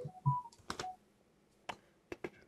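A few sharp, quiet clicks of someone working a computer, with two brief soft tones in the first second.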